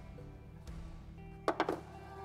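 Background music with steady tones. Near the end comes a quick rattle of three or four sharp clicks from a hand-held cutting tool being handled or put down.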